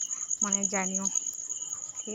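A steady, high-pitched trill of rapid even pulses runs throughout, with a woman's voice briefly over it about half a second in.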